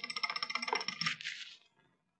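Electric bell ringing: a fast rattle of hammer strikes with a steady metallic ring, cutting off after about a second and a half.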